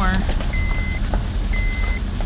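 A Honda car's dashboard warning chime: a steady high beep about half a second long, sounding twice, once a second, over the low rumble of the moving car.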